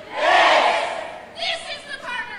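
A crowd shouts a phrase together in unison, then a single woman's shouted voice comes in at about a second and a half. The alternation is the call-and-response of a protest assembly's 'human microphone', heard played back over a hall's speakers.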